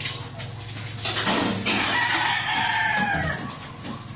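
A rooster crowing once, a single long call starting about a second in and lasting about two seconds, falling slightly in pitch at the end.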